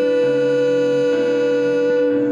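Live pop-musical song: a long note held by voice over keyboard and acoustic guitar accompaniment.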